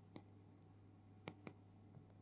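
Marker pen writing on a whiteboard: a few faint, short strokes as letters are drawn.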